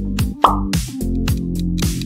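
Upbeat background music with a steady drum beat and bass, with one short pop sound effect about half a second in marking a screen transition.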